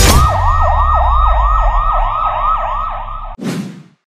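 Siren sound effect, a fast rising-and-falling yelp about three times a second over a low rumble, in a news channel's logo sting. It cuts off suddenly near the end, followed by a short whoosh.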